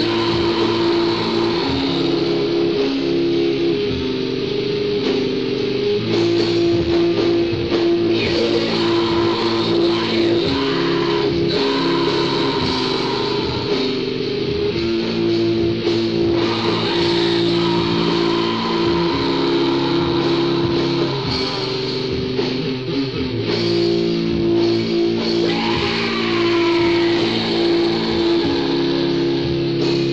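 Raw black metal rehearsal recording: electric guitar and bass holding long chords that change every second or two.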